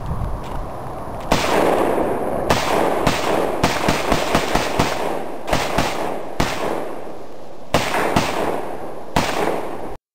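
AK-47 rifle fired over a dozen times, several shots in quick succession about three a second and others spaced out, each shot followed by a rolling echo.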